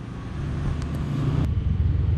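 Low, steady rumble of a motor vehicle engine running in the background, growing slightly louder, with a few faint small clicks.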